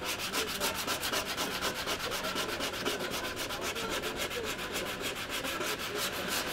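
A bar of surf wax rubbed hard across a surfboard deck in quick, even back-and-forth strokes, several a second, making a dry scratchy rubbing.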